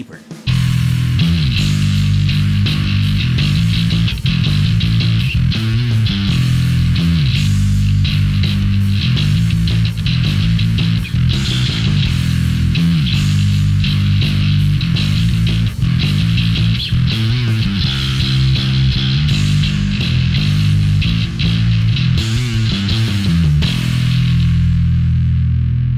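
Electric bass played through a Joyo Double Thruster bass overdrive pedal on a high-gain setting: a heavy, distorted riff of low notes with a gritty top end, starting about half a second in and playing without a break.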